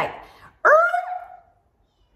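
A woman's short wordless vocal sound, an "ehh" that swoops up in pitch and then holds before fading, acting out a reluctant, unimpressed reaction.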